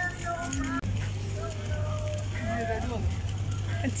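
Indistinct voices and faint music over a steady low hum.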